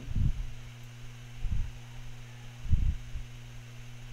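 Steady low electrical hum in the recording, broken by three short, dull low thumps about a second and a quarter apart.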